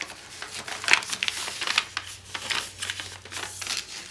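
A folded sheet of printer paper being opened out by hand: irregular crinkling and rustling with sharp crackles as the creased flaps are pulled apart and flattened, the sharpest about a second in.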